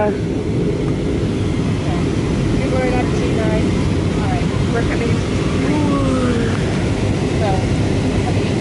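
Steady cabin noise of an Airbus A320-200 airliner in flight, the low, even sound of its engines and rushing air heard from a window seat, with faint voices over it.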